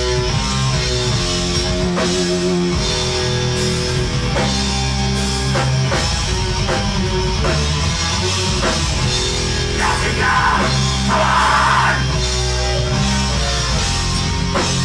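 Black metal band playing live: distorted electric guitars, bass and drum kit in a loud, dense, continuous wall of sound.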